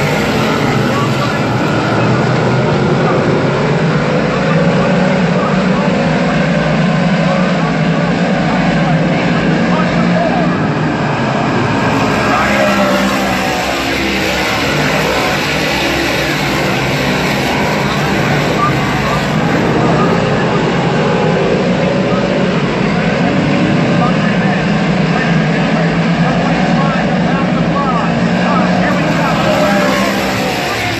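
A pack of 358 modified dirt-track race cars running laps, their small-block V8 engines rising and falling in pitch as they accelerate out of the turns and pass by.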